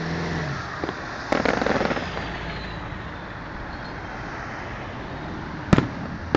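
Aerial fireworks going off: a small bang about a second in, then a crackling burst lasting most of a second, a faint falling whistle, and a loud sharp bang near the end, over steady street noise.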